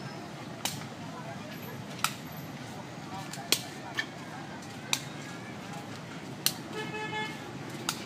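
Steady outdoor background noise with sharp clicks roughly once a second, and a short horn toot near the end.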